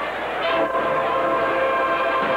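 Marching band brass section, sousaphones included, holding a long, loud sustained chord; a new chord comes in about half a second in and is held.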